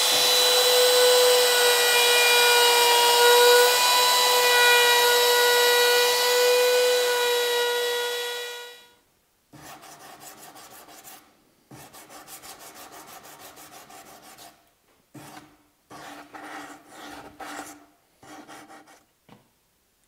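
Trim router with an eighth-inch roundover bit running at full speed with a steady high whine as it rounds over the edges of wooden finger joints, stopping about nine seconds in. After that comes quieter hand sanding of the rounded edges, in short back-and-forth strokes with brief pauses.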